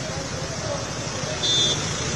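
Crowd chatter over the running engines of motorbikes and cars queued in a traffic jam, with a short high-pitched tone about one and a half seconds in.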